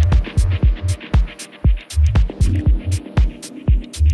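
Deep techno playing: a steady kick drum about twice a second over a deep bass that pulses in time, with hi-hat ticks between the beats.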